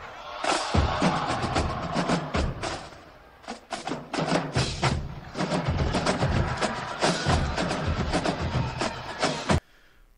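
Marching drumline playing a fast battle cadence, dense snare-drum strokes with bass drums beneath, heard as film soundtrack audio. It dips briefly about three seconds in and cuts off suddenly near the end.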